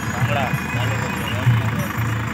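Tractor diesel engine running steadily under load as it pushes soil with a front levelling blade, with a person's voice heard over it early on.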